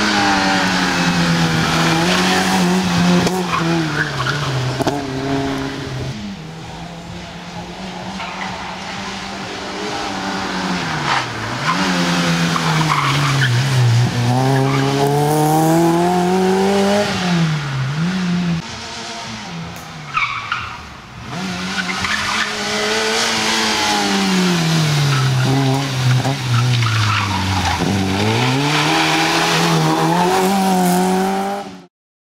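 Fiat Cinquecento rally car's small engine revving hard, its pitch climbing and dropping again and again as the driver accelerates, lifts and shifts through corners, with tyres squealing under hard cornering.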